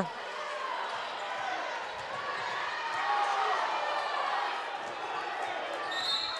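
Crowd in a gymnasium talking and calling out during basketball play, with a ball being dribbled on the hardwood court.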